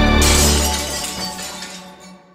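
The ending of a music track: a glass-shattering sound effect hits about a quarter second in over a held low bass note, and both die away to quiet.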